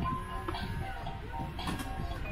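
Toy claw machine playing its simple electronic tune in plain stepped tones while it is being played, with a couple of sharp clicks, about half a second in and again near the end.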